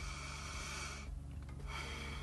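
Deep breaths in through the nose: one long breath, then after a short pause about a second in, another begins.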